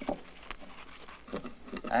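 Film dialogue with a short pause: faint room tone with a few soft clicks, then a voice starting a line near the end.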